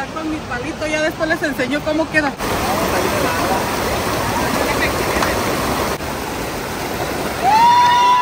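Shallow creek water running steadily over rocks. A voice is heard in the first two seconds, and a long, high-pitched call from a person begins near the end.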